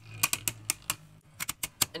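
Two Beyblade Burst tops, Fafnir and Minoboros, spinning in a plastic stadium and clacking into each other in a quick, irregular run of about ten sharp hits, over a low steady hum.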